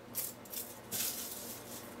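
Dry, dehydrated dandelion leaves crackling as they are crumbled between the fingers into a glass bowl, in a few short bursts.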